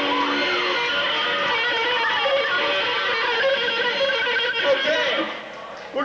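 Live electric guitar played through an amplifier, with voices mixed in. The playing drops away shortly before the end.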